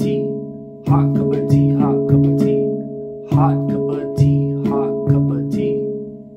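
Handpan played with both hands in a 3-over-2 polyrhythm: the ding or a bass note and a melody note struck alternately in repeating groups, each note ringing on. Two such phrases, the first starting about a second in and the second about three seconds in, with the ringing fading near the end.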